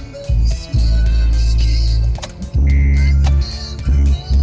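Music from the car's FM radio, played through the cabin speakers, with a heavy bass line.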